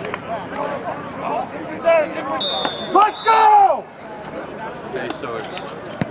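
Several people shouting and talking, with a short, steady referee's whistle blast about two and a half seconds in.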